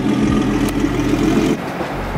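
Turbocharged Nissan 350Z's V6 engine idling steadily, stopping about one and a half seconds in.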